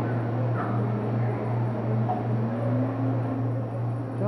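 Steady low machine hum of commercial kitchen refrigeration equipment (a soft-serve ice cream machine, an ice maker and fridges), with a faint background hiss.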